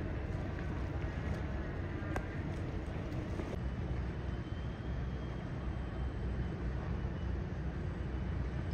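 Steady low rumble of outdoor background noise, with a brief click about two seconds in and a faint high thin tone entering a little past the middle.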